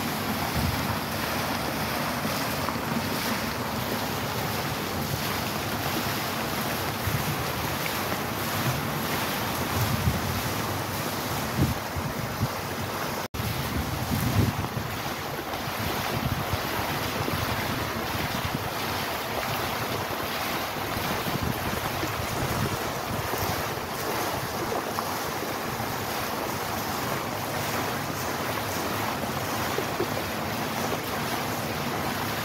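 Fountain water splashing steadily as the jets fall and water spills over the basin's rim into the pool, with some wind buffeting the microphone around the middle. The sound cuts out for an instant about halfway through.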